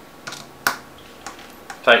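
A screwdriver tightening a fan screw through a rubber-framed 120 mm fan into an aluminium radiator: a few light clicks, the sharpest just over half a second in.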